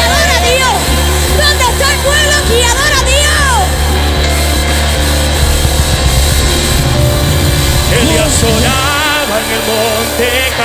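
Live Pentecostal worship band playing an upbeat coro, with singers on microphones over a steady electric bass and band. About eight seconds in, a new voice enters singing.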